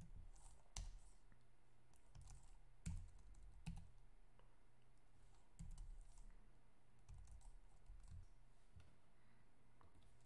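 Faint, irregular keystrokes on a computer keyboard during typing, a few scattered clicks over a low steady hum.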